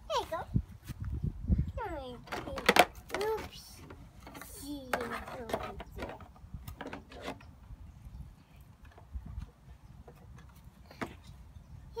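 A young child's high voice chattering in short bursts, with a call of "Hey, go!", over scattered clicks and knocks of handling; the sharpest click comes a little under three seconds in, and the second half is quieter.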